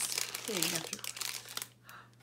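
Clear plastic packaging crinkling and rustling as a small item is worked out of its cardboard box, with rapid small crackles that die down near the end.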